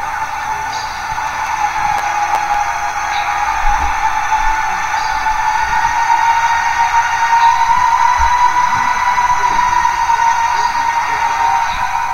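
A steady, high drone from the soundtrack that slowly rises in pitch and grows louder, set under close-up footage of hovering flies and ants.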